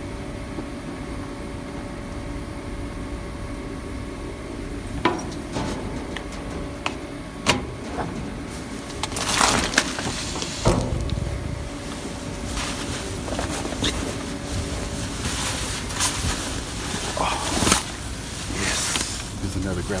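Clear plastic trash bags rustling and crinkling, with scattered knocks and thumps as someone climbs into a dumpster among them, over a steady background hum.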